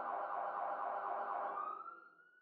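Police siren sounding steadily, rising in pitch as it fades out near the end.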